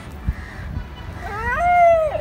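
A tabby cat gives one drawn-out meow in the second half, rising in pitch, holding, then falling away, over a low rumble.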